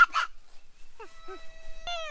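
A toddler's high-pitched calls without clear words: a brief call at the start, then a long held call about a second in that drops off at the end. A sharp click comes just before it ends.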